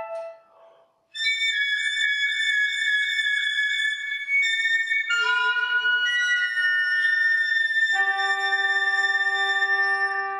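Three clarinets play a slow passage of long held notes sounding together as chords, with the other players of a chamber ensemble. It comes in after a brief silence about a second in, the chord changes midway, and a lower sustained note joins near the end.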